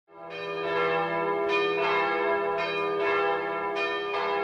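Bells ringing, fading in at the start, with a fresh strike about every second over a sustained, overlapping ringing.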